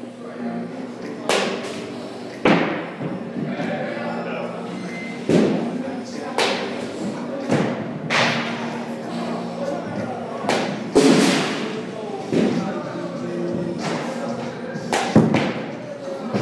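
Baseballs being hit in an indoor batting cage: about nine sharp knocks at irregular intervals, the loudest near the middle and near the end, over background music and voices.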